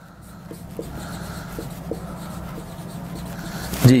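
Marker pen writing on a whiteboard: the felt tip rubs steadily across the board as a word is written, with a few light ticks as the letters are formed.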